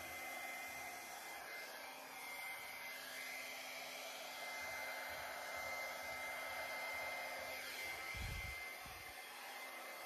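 Small handheld hair dryer running on its low setting: a steady rush of air with a faint high whine, used to blow wet acrylic paint across a canvas. A brief low thump comes about eight seconds in.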